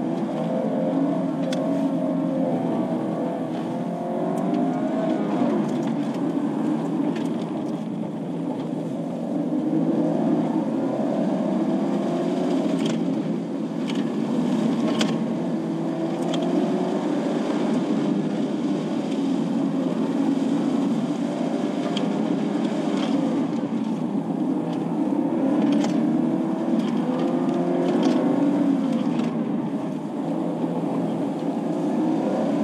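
Car engine heard from inside the cabin during a timed autocross run, rising in pitch and easing off again and again as the car accelerates between cones and slows for corners, with scattered short sharp clicks.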